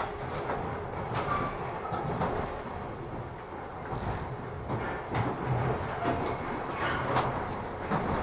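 Running noise of the Kirakira Uetsu, a 485-series electric train, heard from inside the carriage: a steady rumble of wheels on rails with a few sharp clicks as the wheels pass over rail joints and pointwork.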